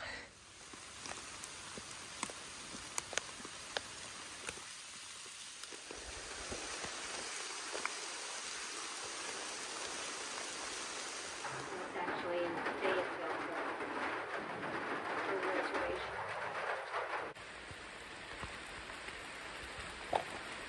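Rain falling steadily on the forest canopy and undergrowth, an even hiss with a few sharp drip ticks in the first seconds. It grows louder and busier for several seconds past the middle, then drops back near the end.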